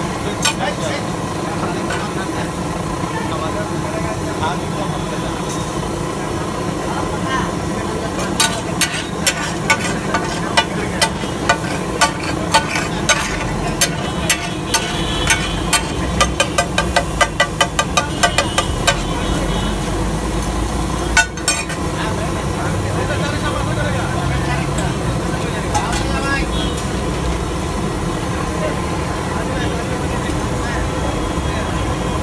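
Butter and vegetables sizzling on a large flat iron griddle. From about a quarter of the way in, a metal spatula clacks against the griddle in a run of sharp strikes, about two a second at first and faster later, as the vegetables are stirred and tossed. One louder knock follows a little after the middle.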